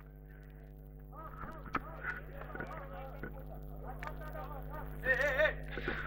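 Faint distant voices of players calling out on the pitch over a steady hum, with one louder call about five seconds in.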